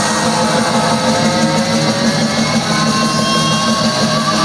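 Death metal band playing live through a venue PA, loud distorted electric guitars holding notes that rise slowly in pitch.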